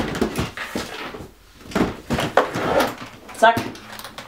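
Metal latches and aluminium frame of a make-up artist's trolley case clicking and clacking as the top section is unlatched and lifted off, a series of sharp knocks with a short lull in the middle.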